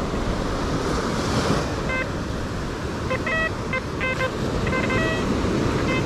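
XP Deus 2 metal detector giving a series of short, pitched target beeps as its coil sweeps over a shallow target that the detectorist takes for a rusty bottle cap. The beeps start about two seconds in and come in small clusters, over a steady background of surf and wind.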